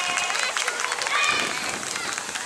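High voices calling out and crowd voices dying down, with a few scattered sharp claps or clicks.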